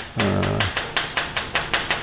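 Chalk on a blackboard, tapping and scraping in a quick series of short strokes as characters are written, about six or seven strokes a second. A brief low hum sounds under the first half second.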